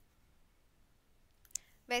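Near silence with faint room tone, broken by a single sharp click near the end, just before a woman's voice begins.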